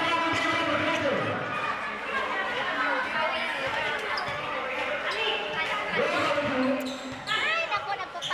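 A basketball being dribbled on a hard court, with voices of players and spectators calling and chattering over it.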